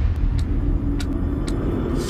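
Cinematic trailer sound design: a deep, steady bass rumble with a faint held tone above it and a few sharp clicks.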